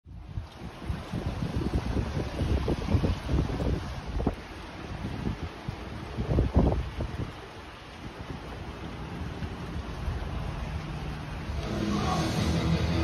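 Wind buffeting the microphone in irregular gusts, a low rumbling noise that rises and falls. Music starts just before the end.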